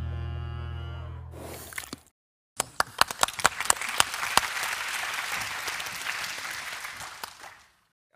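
A film trailer's music ends on a held, low chord that fades out, then after a brief silence an audience applauds, with sharp individual claps standing out, the applause dying away near the end.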